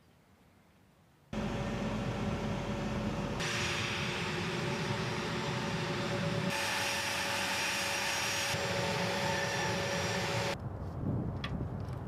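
Engines of a Fairchild Republic A-10 Thunderbolt II running on the ground: a loud, steady jet noise with a high whine. It starts suddenly about a second in, jumps in level a few times, and falls away near the end, leaving a few light clicks.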